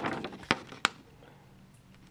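Two short, sharp clicks about a third of a second apart, followed by a faint, steady low hum.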